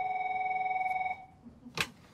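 Corded desk telephone ringing once, a steady ring lasting about a second, then a sharp clack near the end as the handset is lifted.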